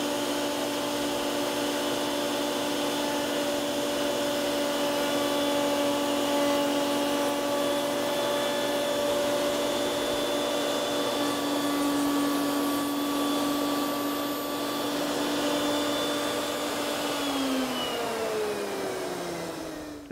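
Table-mounted router with a spiral bit running at full speed with a steady whine while a workpiece is fed into it for a stopped rabbet cut. The motor is switched off about three seconds before the end, and its pitch falls as the bit spins down.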